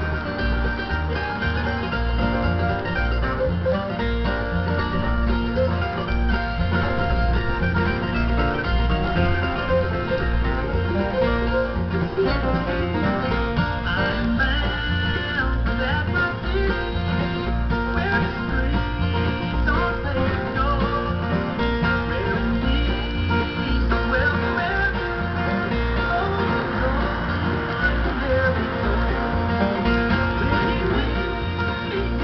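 Bluegrass band music from a radio broadcast, with banjo and a steady bass beat, and a flatpicked Fender Malibu acoustic guitar playing along.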